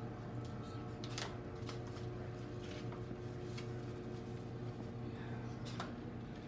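A steady low electrical hum, as of a household appliance or fan motor, with a few faint short clicks and handling noises.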